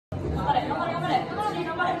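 Chatter of several people talking at once in a large, echoing room.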